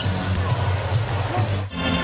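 A basketball dribbling on a hardwood court during live play, over steady arena music. The audio cuts off abruptly near the end.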